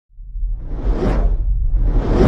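Cinematic whoosh sound effect over a deep rumble: one swelling sweep that peaks about a second in and fades, with a second whoosh rising near the end.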